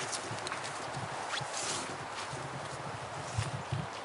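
Footsteps on grass and fallen leaves: soft, irregular steps with faint rustling as someone walks slowly along the car.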